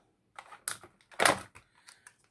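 Plastic clamshell packs of wax melt bars being handled and stacked, giving a few short clicks and crinkles, the loudest about a second in.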